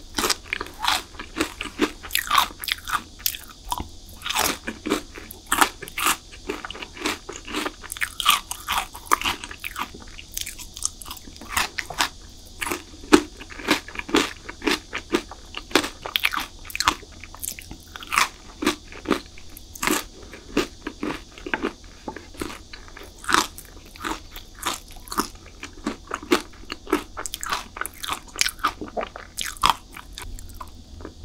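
Close-miked eating: crisp bites into chocolate bars and a steady run of irregular crunches, several a second, with chewing between them.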